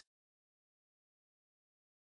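Silence: a digitally silent gap between spoken words.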